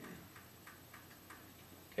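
Faint ticking: a run of light clicks spaced roughly a third of a second apart.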